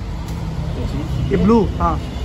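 A steady low background rumble, with a brief spoken word or two a little past the middle.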